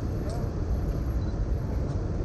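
City street ambience: a steady low rumble of road traffic, with a faint voice about a quarter second in.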